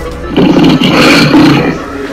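A loud monster roar: a rough, gravelly growl that starts about a third of a second in and lasts about a second and a half.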